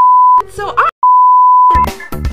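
A censor bleep: a single steady high beep, sounded twice, a short one at the start and a longer one of nearly a second starting about a second in. A snatch of a cartoon voice falls between the two beeps.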